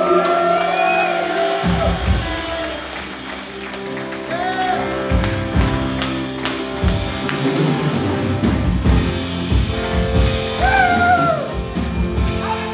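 Live worship music: held keyboard chords, with bass and drum beats coming in about two seconds in, and a voice singing short phrases now and then.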